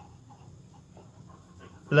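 Faint scratching of a pen writing letters on paper.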